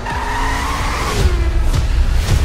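Car tyres squealing in a high-speed chase for about a second, the pitch sliding down as it fades, over a heavy low rumble.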